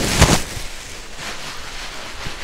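Handling noise from a phone being carried and swung about: a bump and rustle right at the start, then steady rustling.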